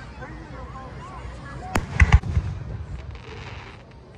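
Aerial fireworks going off: a sharp crack a little under two seconds in, then quickly two loud, deep booms, followed about a second later by a short hiss.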